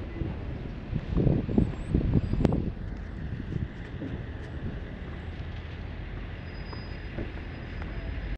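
A steady low rumble of wind and road traffic on a body camera's microphone. Between about one and three seconds in there is a cluster of louder low bumps with one sharp click, as the camera is handled.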